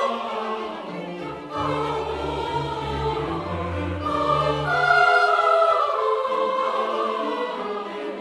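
Classical choral music: voices holding long, slowly gliding notes over low sustained bass notes, swelling louder about five seconds in.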